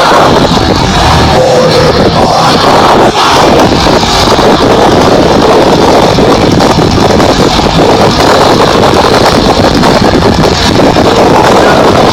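A death metal band playing live through a festival PA, so loud that the phone's microphone overloads into a constant distorted wash in which little of the music can be made out.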